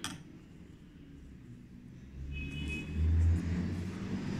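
A low rumble that comes in about halfway through and grows louder, with a faint, brief high tone near the middle.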